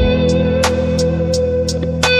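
Instrumental passage of a pop song: a long sustained lead note with slight bends over a steady bass line, with cymbal ticks about three times a second.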